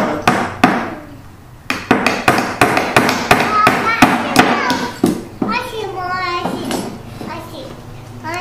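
Hammers driving small nails into the wooden pieces of a birdhouse kit. There are two strikes, a short pause, then a quick run of strikes at about four or five a second. A child's wordless voice comes in briefly after the hammering stops.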